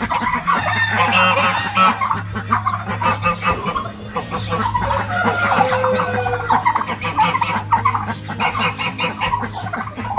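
Domestic turkeys clucking and calling in rapid, busy runs of short notes, over a steady low hum.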